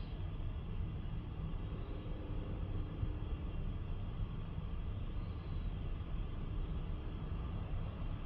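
Steady low background rumble with no speech, with a faint hum that comes in for a second or so around two to three seconds in.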